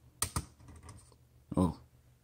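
Small FPV antenna set down on a digital pocket scale's metal platform: two sharp clicks a fraction of a second apart, followed by a few faint taps.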